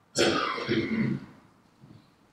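A person clearing their throat once, lasting about a second, in a quiet room.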